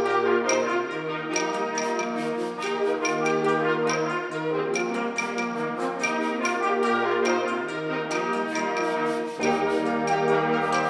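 A concert band plays: sustained brass and woodwind chords over a steady percussion beat, with deeper bass notes coming in near the end.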